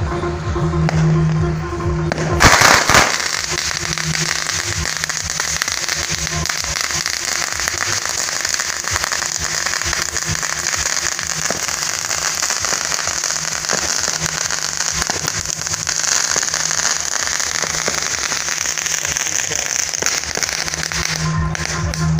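A long string of firecrackers going off: a loud burst about two and a half seconds in, then dense, continuous crackling until just before the end.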